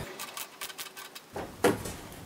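Ratchet and socket clicking rapidly as it tightens a steel hose clamp, followed by one louder knock about a second and a half in.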